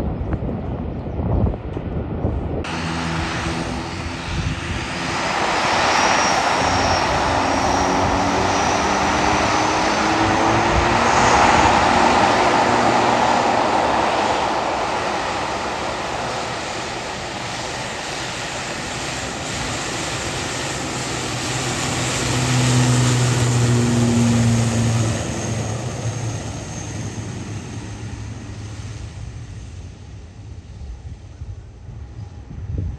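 ATR 72-500's twin turboprop engines and propellers running as the airliner rolls along the runway close by, a loud drone that swells, drops in pitch as it passes, swells again later and fades toward the end. A low rumble with wind on the microphone comes first, for the opening couple of seconds.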